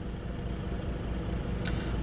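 Car engine idling, heard from inside the cabin as a steady low rumble while the car stands still in a traffic jam.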